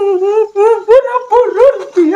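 A high-pitched human voice crying or wailing, in a wavering cry that rises and falls and breaks into short sobs about every half second.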